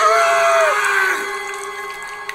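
A man screaming in pain: one strong held cry that bends downward after under a second and then fades, over a steady low tone.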